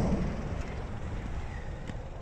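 Steady outdoor background noise with a low rumble and no distinct events, the handheld camera moving round to the open rear door.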